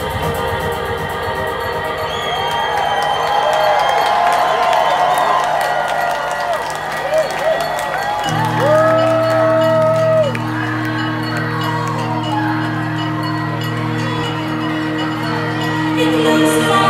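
Live electronic music played through a club PA, with held synthesizer chords and the crowd cheering and whooping over it. About halfway through, a sustained low bass chord comes in under the synths.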